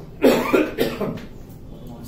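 A man coughing, a short run of three quick coughs in the first second, hand over his mouth.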